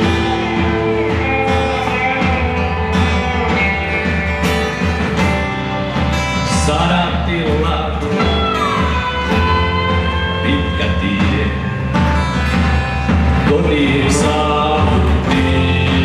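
Live pop-rock band playing a song with singing, with drum kit and electric guitar, recorded from the audience.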